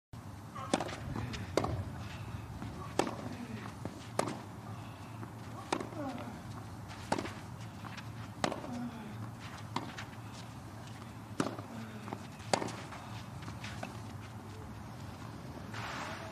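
Tennis rally on a clay court: sharp racket strikes on the ball about every second and a half, each followed by a softer bounce, over a steady low background.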